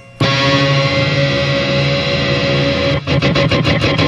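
Washburn Gold Top electric guitar played loud through an amplifier with distortion: a chord struck just after the start and left ringing, then, about three seconds in, a quick run of picked strokes before another held chord.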